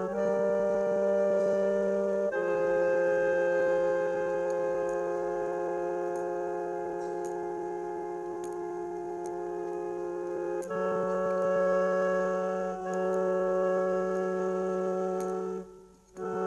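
Background music of long, held organ chords; the chord changes twice.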